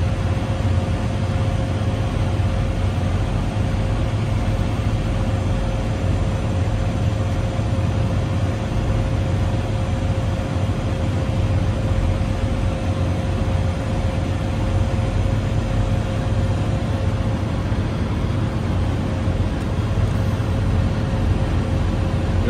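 A semi-truck APU's small diesel engine running steadily at a constant speed, heard close up in its open compartment: a steady low drone with a faint steady whine above it. It is on a test run after a repair attempt.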